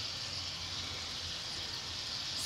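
Steady sizzling hiss from palm oil and ingredients cooking in an aluminium pot over a fire.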